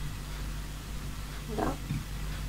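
Quiet room tone with a low steady hum, and one short spoken word near the end.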